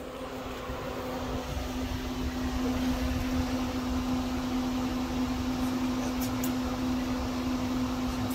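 Pop-up camper's propane furnace running just after switching on: a steady blower hum, with a low rumble that builds over the first few seconds and then holds, and a few faint clicks past the middle. The furnace has just been repaired and is working.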